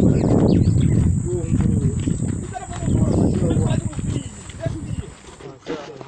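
People walking on dry sandy ground, with faint voices talking and a heavy low rumble on the microphone that fades about five seconds in; a few sharp footfall-like knocks near the end.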